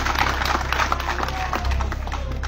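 Scattered hand clapping from an audience, a quick run of irregular claps that thins out after about a second, over a faint music bed with a low pulse about every two seconds.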